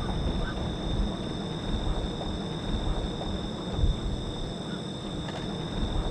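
Night insect chorus: a steady high-pitched buzz from insects over a low, rumbling background noise.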